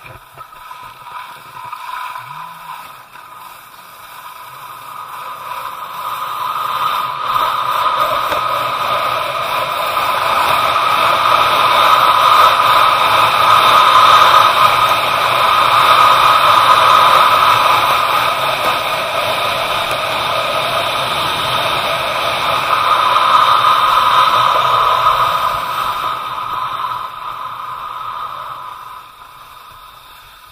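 Steady scraping hiss of a board or skis sliding down packed snow. It grows louder as the run picks up speed, stays loud through the middle and fades near the end as the rider slows.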